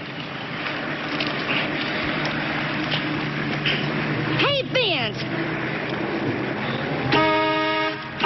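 A car running at idle under steady street noise, with a short vocal exclamation about halfway. About a second before the end a car horn starts, one steady held note.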